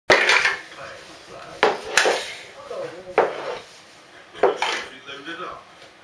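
Lego bricks clattering: five sharp knocks and rattles of hard plastic pieces, the first and loudest right at the start, then about a second and a half in, at two seconds, at three, and at about four and a half seconds.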